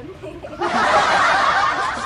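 A man and a young woman laughing together, breaking into loud laughter about half a second in.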